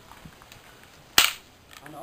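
A single sharp, loud crack of two arnis sparring sticks striking each other about a second in.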